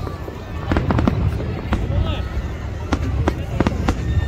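Aerial fireworks going off in quick succession: many sharp bangs and cracks, several a second and irregularly spaced, from shells bursting overhead.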